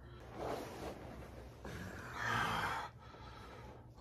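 A man breathing out heavily as he rolls over under a down quilt, its polyester shell rustling: a short soft breath about half a second in, then a longer, louder breathy exhale about two seconds in, lasting about a second.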